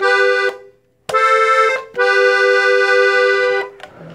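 Hohner Panther three-row diatonic button accordion playing a slow melody on its treble buttons, two notes sounding together: two short notes, then one held for about a second and a half, dying away shortly before the end.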